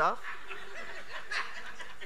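Congregation chuckling quietly, with a brief slightly louder laugh about a second and a half in.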